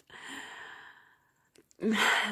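A woman's breathy sigh, an exhale that fades away over about a second, followed by a brief pause before she speaks again near the end.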